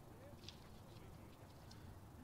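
Near silence: faint outdoor ballpark ambience with a low rumble and a few faint clicks.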